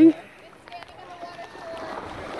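A woman's voice finishes a word just after the start, then a quiet stretch of outdoor background with faint distant voices.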